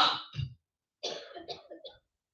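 A person clearing their throat: a few short, rough rasps in the second half.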